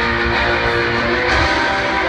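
Live rock band music played loud over a concert sound system, with electric guitar prominent.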